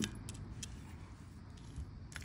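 Faint, scattered clicks of coffee beans being stirred with a wooden spoon in a long-handled pan as they roast over coals, over a low steady rumble.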